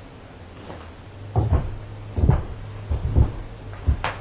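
A run of six or so dull knocks and thumps in quick succession, starting about a second and a half in, heaviest in the low end.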